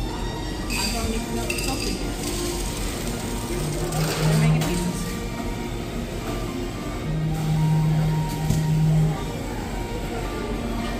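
Busy buffet room: background chatter and music, with dishes or glasses clinking a couple of times near the start.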